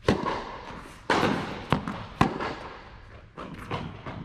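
Tennis ball struck by rackets and bouncing during a rally: a series of sharp pops with echo from the hall. The loudest come just after the start, about a second in and a little past two seconds, with a cluster near the end.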